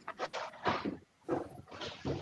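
A person's breathy vocal sounds without clear words, in two short bouts, picked up by a video-call microphone.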